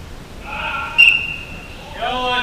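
Players' shouts and calls during an indoor soccer game, with a sudden sharp high-pitched sound about a second in.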